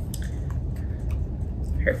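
Faint clicks and rustles of masking tape being pressed down by hand onto a small cardboard car, over a steady low room hum.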